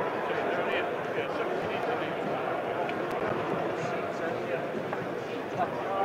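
Steady murmur of many indistinct voices from the arena crowd, with no single voice standing out.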